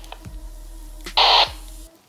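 Handheld two-way radio giving a short burst of squelch static about a second in, over a low steady hum that cuts off near the end.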